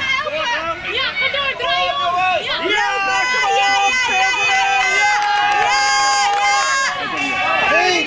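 Children and sideline spectators shouting and yelling over one another, high voices without clear words. Between about three and seven seconds in, several voices hold long, drawn-out yells.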